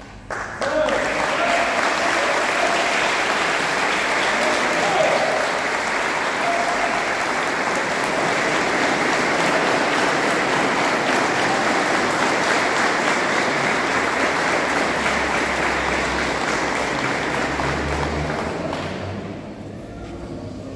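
A crowd applauding: the clapping starts abruptly just under a second in, holds steady, and dies away near the end.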